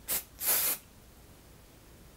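Aerosol can of IGK First Class Charcoal Detox Dry Shampoo spraying into hair: two short hissing bursts, the second longer, in the first second.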